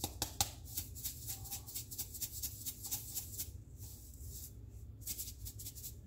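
Hand-held pepper grinder being twisted over a bowl: an irregular run of dry, rattling clicks from the grinding mechanism.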